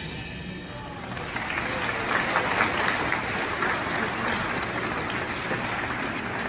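A crowd of people applauding: the clapping builds up about a second in and then carries on steadily.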